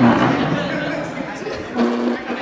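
A group of people chattering in a large room, with a louder voice right at the start and again near the end.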